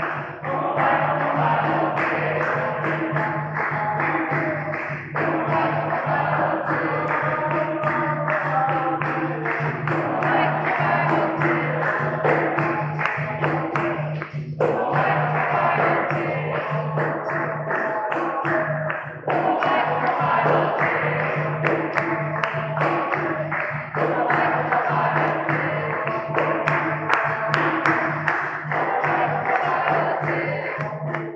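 Capoeira roda music: berimbaus and an atabaque drum playing a steady rhythm under dense hand-clapping, with group singing that pauses briefly between phrases every few seconds.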